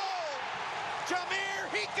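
A television commentator's excited shouting over steady stadium crowd noise.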